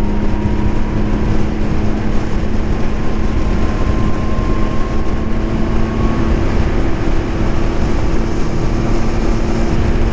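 2022 Can-Am Ryker 900's three-cylinder engine running at a steady pitch at road speed, under a steady rush of wind and road noise.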